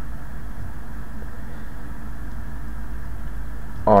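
Steady low hum and hiss of background noise picked up by the microphone, with no distinct events.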